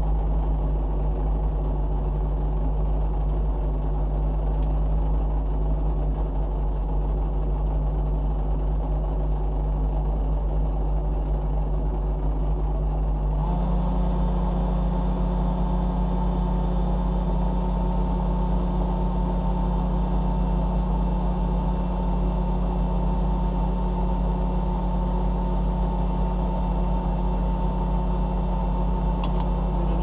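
Rally car engine idling steadily while the car stands still, heard inside the cockpit. About halfway through the idle note steps up slightly and a steady higher whine joins in.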